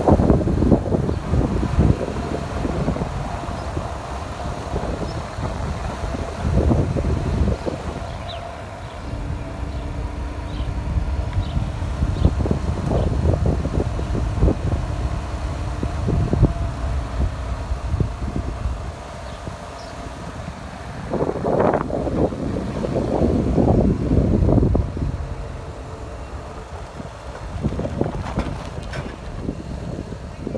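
Wind buffeting the microphone from a slowly moving car, in uneven gusts, with the car's engine humming steadily underneath.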